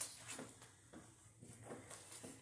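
Near silence: room tone, with a few faint, brief rustles.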